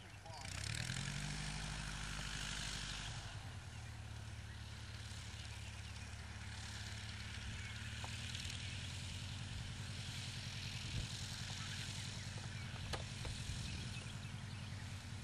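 A Bearhawk light taildragger's piston engine and propeller running as the plane rolls and taxis on the ground. The engine note rises about half a second in, drops back a little around three seconds, then holds steady.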